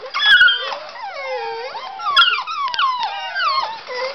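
Several German Shorthaired Pointer puppies whining and yelping at once, many high calls overlapping and mostly sliding down in pitch, with a few sharp clicks among them.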